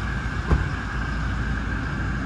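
Toyota Hilux's 2.8 turbo-diesel engine idling steadily, with one short knock about half a second in.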